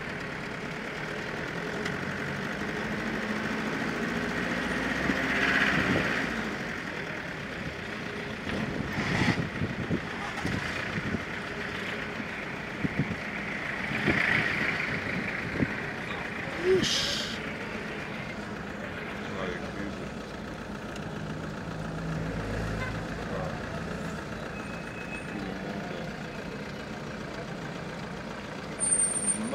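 Street traffic heard from inside a car with its side window open: a steady road-noise wash, with nearby vehicles passing about five seconds in and again around fourteen seconds, the second one a minibus alongside.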